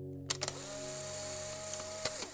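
Edited intro sound effect: a few sharp clicks, then a hiss with a steady high whine lasting about a second and a half, laid over soft ambient music.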